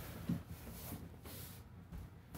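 Quiet rustle and scrape of a cardboard box being slid out of its printed cardboard sleeve.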